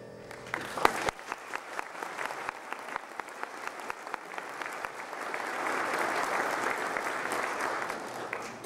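The last held piano chord dies away, then an audience claps, starting about half a second in and filling out into a full round of applause that thins near the end.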